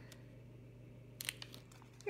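Faint crinkling of a hypodermic needle's plastic blister pack being handled, a few short crackles a little past the middle over a low steady hum.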